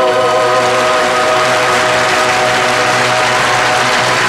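Orchestra holding the final chord of a pop ballad, with a wash of audience applause rising over it.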